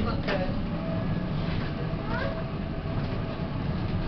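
Vintage tram heard from inside the car while running: a steady low rumble, with a sharp click just after the start and a thin steady whine for a couple of seconds.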